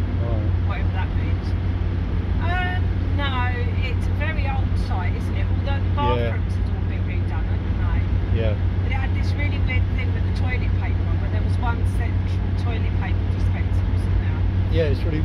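Steady low drone of a motorhome's engine and road noise heard inside the cab while cruising at motorway speed.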